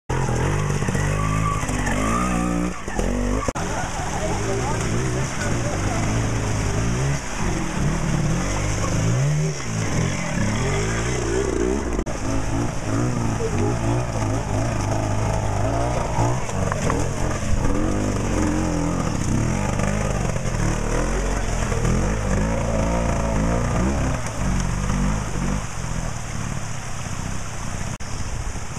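Classic twin-shock trials motorcycles climbing a rocky, muddy gully at low speed, their engines revving up and down again and again as the riders work over the obstacles.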